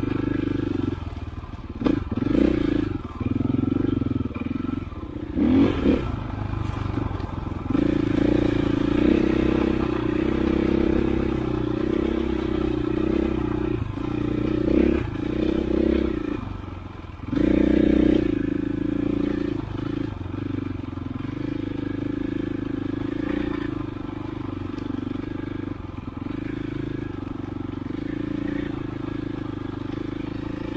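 KTM 500 EXC single-cylinder four-stroke enduro engine under way on a trail, its note rising and falling with the throttle, with a few sharp surges and several knocks from the bike.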